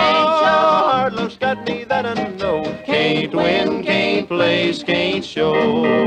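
Closing bars of a 1946 country-and-western record: a string band with steel guitar holds a chord just after the last sung line, plays a short ending phrase, and settles onto a final sustained chord near the end.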